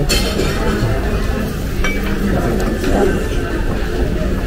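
Busy restaurant dining room: a steady hum of background chatter with dishes and cutlery clinking, including a sharp clink about two seconds in.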